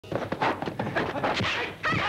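Kung fu film fight sound effects: a quick run of dubbed punch and kick impacts, about six or seven a second, then a short shouted cry near the end.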